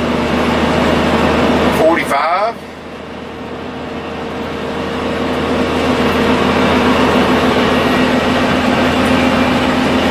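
Cab noise of a 2005 Country Coach Inspire diesel motorhome driving at highway speed: steady road and tyre noise with a low steady hum. The noise dips about two and a half seconds in, then builds back up steadily over the next few seconds.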